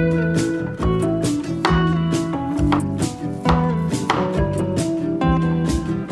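Acoustic guitar background music, with a chef's knife slicing through a kiwi and knocking on a wooden cutting board a few times.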